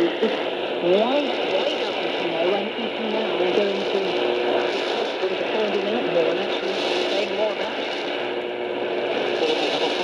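BBC World Service shortwave broadcast on 7300 kHz played through a Radiwow R-108 portable receiver's speaker: a man's voice talking under static hiss, with two steady whistle tones beneath it.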